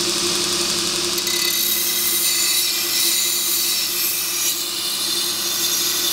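Belt grinder running steadily with a steel knife blade, made from a lawnmower blade, pressed against the abrasive belt and throwing sparks: a steady motor hum under a high grinding hiss.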